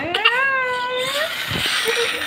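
Baby's long, high-pitched squeal of delight that rises in pitch and then holds for about a second, trailing off into breathy noise.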